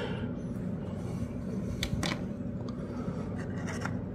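Plastic model car parts handled on a cutting mat: a couple of faint short clicks about two seconds in, over a steady low hum.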